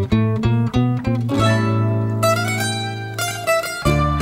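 Instrumental song intro on plucked acoustic strings: a run of quick plucked notes, then a held bass note under a ringing chord with a high melody line, and the quick plucking starts again near the end.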